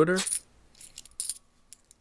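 Glossy trading cards sliding and flicking against each other in the hands as the front card is moved to the back of the stack: a few faint, crisp rustles and light clicks.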